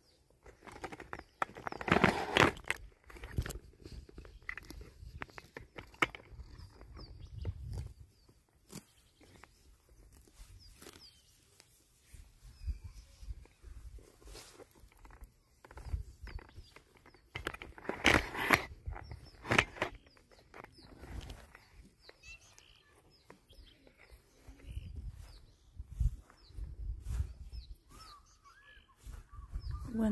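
Outdoor ambience while walking with a body-worn camera: gusty rumble on the microphone, rustling and footsteps, and faint bird chirps. A few loud rustles come about two seconds in and again around eighteen to twenty seconds.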